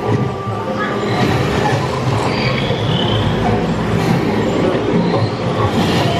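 Steady background din inside a dark indoor boat ride: a low rumble with a murmur of voices mixed in.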